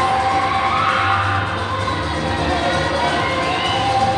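Dance music playing for a group dance performance, with a crowd of schoolchildren cheering and shouting over it throughout.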